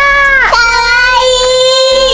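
A high, childlike voice drawing out one long, steady sung note after a short falling slide.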